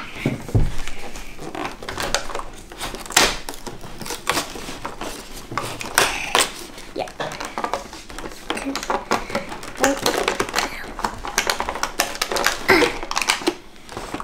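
Fingers tapping, scratching and pressing at a cardboard advent calendar box and tearing open one of its doors: a busy run of short dry clicks, taps and rips.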